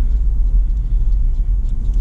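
Steady low rumble of a car driving slowly along a paved road, heard from inside the cabin.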